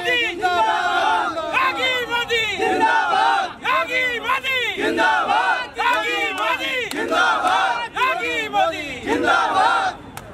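A group of men chanting slogans loudly in unison, one shouted phrase after another in a steady call-and-chant rhythm.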